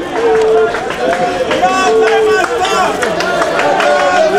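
Several men's voices talking at once in a crowd, with no other sound standing out.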